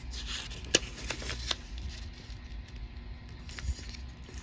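A small square of origami paper being folded in half and creased by hand: soft paper rustling with a few sharp crackles and taps, the sharpest about three quarters of a second in.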